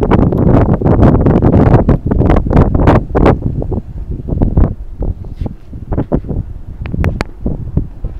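Wind buffeting the microphone of a handheld camera, a heavy low rumble that is strongest for the first three seconds and eases after, broken by many short knocks and rustles.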